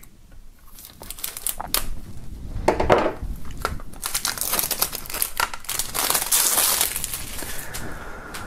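Plastic shrink-wrap film being torn and peeled off a CD jewel case, crinkling and crackling. A few scattered crackles at first, then dense continuous crinkling from about four seconds in, easing off near the end.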